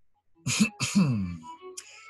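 A man clears his throat about half a second in: a short rough burst, then a voiced sound that falls in pitch.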